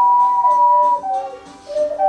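Two ocarinas playing a hymn tune in two-part harmony, the upper part holding a high note while the lower part steps downward. The playing softens briefly just past the middle, then both parts come back in near the end.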